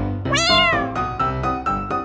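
A cat's meow, once and short, rising then falling in pitch about a third of a second in, over background piano music.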